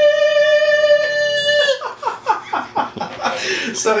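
A man holds one long, high sung note, which breaks off a little under two seconds in into laughter: a quick run of short, falling 'ha-ha' bursts lasting about two seconds.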